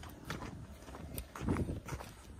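Footsteps on an asphalt road, a string of short irregular steps, with wind rumbling on the microphone; a louder gust or scuff comes about one and a half seconds in.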